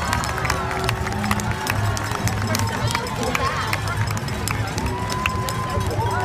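Footsteps of a dense pack of marathon runners on the pavement, many quick irregular footfalls, over the voices of a spectator crowd. A long held high note, like a cheer or whistle, comes in near the end.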